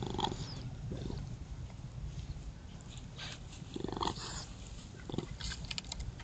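Young raccoons calling in short bursts as they play: a call at the start, a louder and longer one about four seconds in, and a brief one shortly after.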